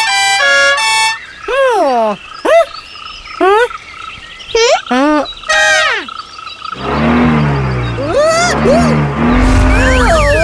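Cartoon sound effects. It opens with a short run of stepped-pitch toots, then comes a series of squeaky, sliding cartoon voice sounds. From about seven seconds a rushing whoosh with low wobbling tones plays: a cartoon dash-off effect.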